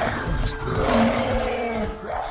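Action-film soundtrack: a loud creature-like roar trailing off at the start, then held notes of orchestral score.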